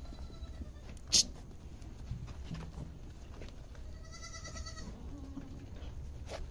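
A doe goat in labour gives one short, wavering bleat about four seconds in, followed by a fainter low call. A brief sharp click about a second in is the loudest sound.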